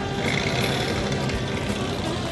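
The engine of a 1955 Chevrolet Corvette running steadily as the roadster drives slowly past at low speed.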